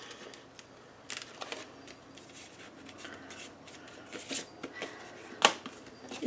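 Paper and cardstock rustling and sliding as hands press down a glued flap and move pieces on a countertop, with a few light taps and one sharp tap near the end.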